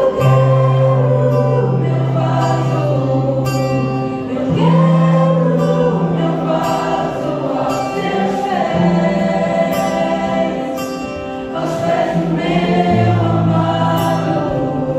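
Gospel worship song in Portuguese, with voices singing slow lines of long held notes over acoustic guitar.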